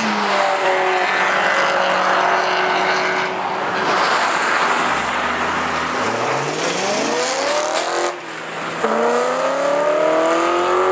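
Cars lapping a race circuit under power: a steady engine note at first, then an engine rising in pitch as a car accelerates, breaking off sharply just after eight seconds as at a gear change or lift, and rising again near the end.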